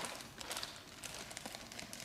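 Faint crinkling of a clear plastic bag, with small light clicks, as a toddler's hands rummage among the toy letters inside it.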